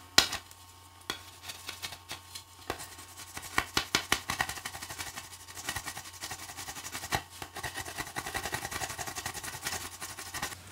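Knife whittling a stick of green wood into a peg: a run of irregular, sharp scraping cuts that come faster and closer together in the last few seconds.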